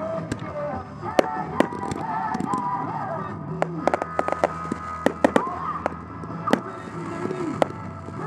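Aerial fireworks going off in a quick string of sharp bangs and crackles, thickest around four to five seconds in, with music playing throughout.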